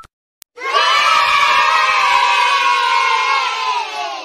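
A crowd of children cheering "yay!" together, an edited-in sound effect. It starts about half a second in after a short click, holds at one level, and dies away at the end.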